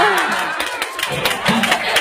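Audience cheering and clapping, the crowd noise thinning out after about a second into scattered claps and voices.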